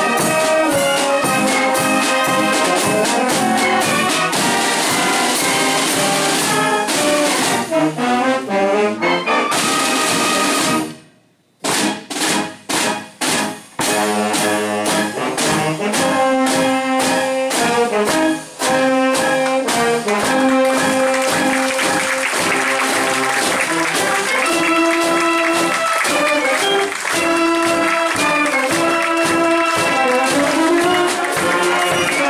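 A drum and trumpet corps with brass band playing a march: brass over snare drums, bass drum and cymbals. About eleven seconds in the music stops dead for a moment, then comes back as a few short, clipped hits before the full band plays on.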